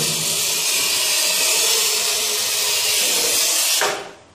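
Manual tile cutter's scoring wheel pushed with light pressure along a ceramic floor tile in one continuous stroke: a steady, scratchy hiss that stops abruptly just before the end. It is the wheel scoring the tile along the cut line before the tile is snapped.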